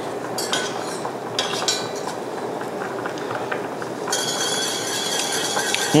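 Wire whisk clinking and scraping in a stainless steel saucepan of brown sauce simmering on low heat: a few light clinks, then steady whisking from about four seconds in.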